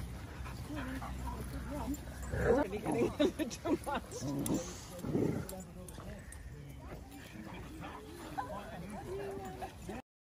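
Several Vizsla dogs vocalising in short, pitch-bending calls as they run in a group, loudest from about two to four seconds in and again near the end, with human voices mixed in.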